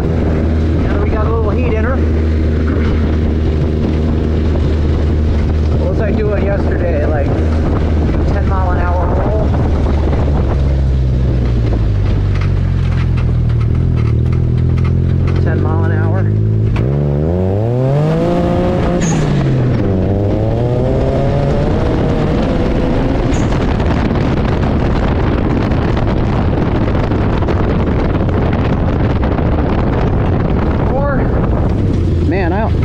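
Turbocharged buggy engine running while driving, steady at first, then revving up and down several times from about the middle on, with a sharp rise in engine pitch a little past halfway.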